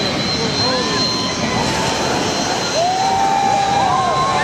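Jet airliner on a low approach over the sea, its engines whining with a steady high tone under a wash of engine noise. A crowd of people are calling out and talking over it.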